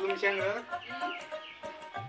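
A rooster crows once, a rising then falling call lasting about a second and a half, over steady background music.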